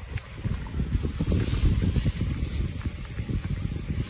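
Wind buffeting the microphone: a low, irregular, gusting rumble.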